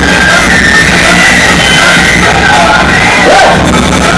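Live hip-hop music played very loud through a club PA, with a heavy, steady bass line, recorded from within the audience; crowd noise is mixed in.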